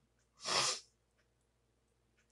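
A woman's single short, breathy sneeze about half a second in.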